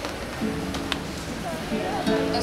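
Transverse flute and acoustic guitar playing held notes, the closing notes of a song.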